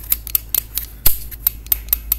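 Sharp small metal clicks from an AR-15 lower receiver's Radian selector and fire-control parts being forced by hand, about ten in an irregular run with one louder snap about a second in. The selector has jumped out of its timing track and locked up, and it is being pushed hard to get it back into position.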